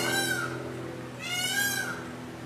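A cat meowing twice, each short call rising then falling in pitch, over a steady low hum.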